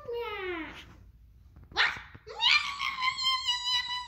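A child's voice making high-pitched animal-like cries: a short falling cry, then a sudden rising squeal held as one long high note.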